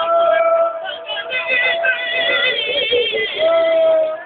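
A high voice singing a devotional chant in long held notes with a wavering pitch, one note breaking off about three seconds in and then picking up again.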